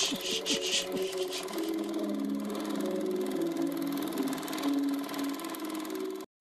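A machine-like whirring hum with a quick burst of rattling clicks in the first second and a half. It settles into a steady hum of several held tones.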